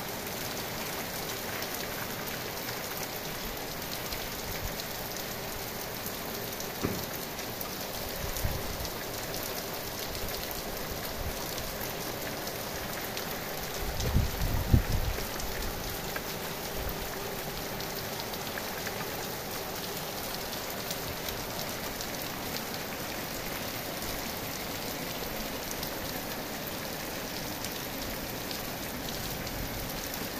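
Heavy rain falling steadily on a pomegranate tree's leaves and the ground, a dense even hiss of drops. A brief low rumble swells up about halfway through.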